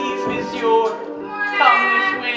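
Orchestral accompaniment for a stage musical, holding sustained notes. Near the end a high voice briefly calls out with a sliding pitch.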